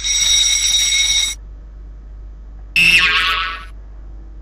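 A quiz game's time-up buzzer, a high, steady electronic tone lasting about a second and a half as the countdown runs out. About three seconds in, a shorter pitched sound effect plays as the answer is revealed.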